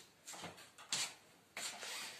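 A wooden interior door being pushed open, with a sharp click or knock about a second in and faint rubbing sounds around it.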